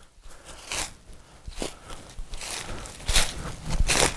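Footsteps crunching through dry leaf litter at a walking pace, about one step every second, growing louder in the second half.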